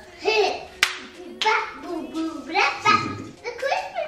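A young child talking in a high voice, in short phrases, with a single sharp click about a second in.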